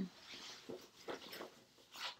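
A fabric backpack being opened and rummaged through: a few short, faint rustles and scrapes of cloth and its contents.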